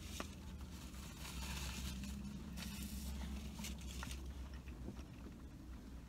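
Quiet chewing and soft rustling as a flatbread gyro is handled, with a faint click just after the start, over a steady low hum.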